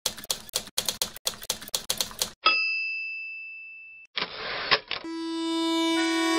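Typewriter keys clacking rapidly for about two seconds, then the typewriter bell dings and rings away, followed about four seconds in by a short rasping slide ending in a click, like a carriage return. Music with held notes starts near the end.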